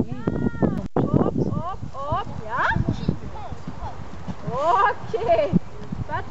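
Several people's voices calling out and whooping, overlapping short cries that rise and fall in pitch, with no clear words.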